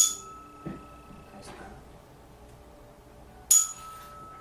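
A metal tuning fork struck with a sharp clink, then ringing with a steady high tone for about a second and a half as it is held to the body for a vibration test. A soft knock comes in between, and near the end the fork is struck again and rings on.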